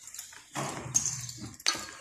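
Metal snap hooks and a rope pulley on braided lead ropes clinking as they are handled, with sharp clinks about a second in and near the end. A low voice-like hum sounds underneath in the middle.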